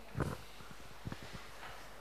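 Quiet room tone with one brief low sound about a quarter second in, then a few faint clicks about a second in.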